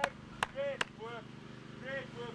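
Hand clapping: three sharp claps in the first second, about half a second apart, with faint shouting from players further off.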